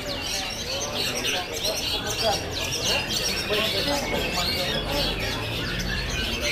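A dense chorus of caged long-tailed shrikes (cendet) singing at once, many quick overlapping chirps and whistled phrases with no pause, over a murmur of crowd voices.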